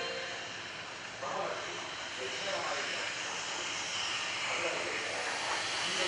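EF200 electric freight locomotive rolling slowly toward the listener at the head of a container train: a steady hissing rumble of wheels and traction equipment that grows louder toward the end.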